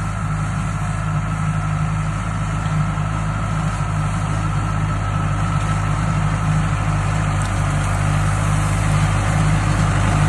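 Farm tractor engine running steadily, growing a little louder as the tractor drives closer.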